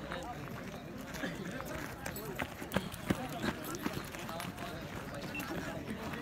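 Background murmur of several voices talking at a distance, with scattered short knocks and footsteps on the dirt.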